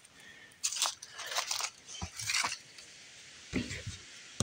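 Footsteps crunching through dry leaves and dirt: several short crisp crunches, one after another, as someone walks.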